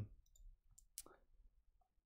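Near silence, broken by a faint computer mouse click about halfway through and a few fainter ticks before it.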